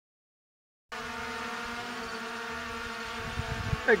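DJI Mini 4 Pro quadcopter hovering, its propellers giving a steady multi-tone buzz that starts suddenly about a second in. A few low thumps come just before the end.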